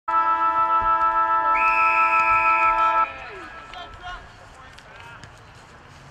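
Football ground siren sounding to start play: a loud, steady multi-tone hooter with a slight pulse, lasting about three seconds and stopping abruptly. Faint distant shouts from the field follow.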